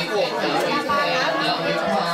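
Crowd chatter: many people talking over one another in a hall.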